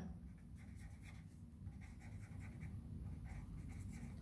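Pen writing on paper: faint, short scratching strokes as numbers and words are written, over a low steady hum.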